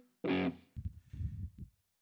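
Electric guitar through a distorted amp, struck once briefly about a quarter second in, then a few fainter low plucked notes: the guitar being retuned between songs.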